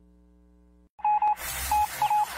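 Short high electronic beeps: two quick ones about a second in and another near the end, after a faint low hum and a brief dropout, with a hiss rising underneath.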